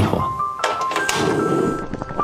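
Background music with a light melody, and a thunk about half a second in as a glass lid is set down on a frying pan.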